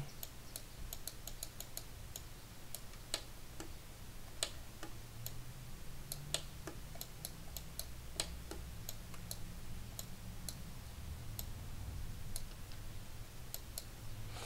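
Faint, irregular clicks of a computer mouse and keyboard, a few per second, over a steady low hum.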